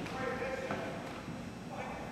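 Indistinct voices of players echoing in a gym, with light, irregular clacks on the hardwood floor.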